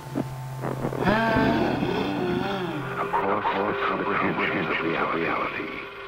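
Wordless, layered voices wailing and moaning with wavering, sliding pitch over a steady low electrical hum. The hum drops out about halfway through, and the sound turns duller as if cut to another recording.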